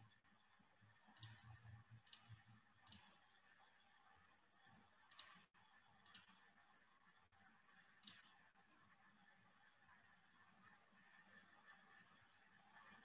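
Near silence with six faint, scattered clicks, typical of a computer mouse being clicked.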